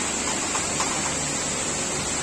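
Compressed air blowing from a workshop air hose: a steady, even hiss.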